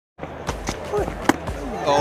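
Field sound from a cricket match broadcast: a handful of sharp knocks, the loudest a little past halfway, with faint voices behind them.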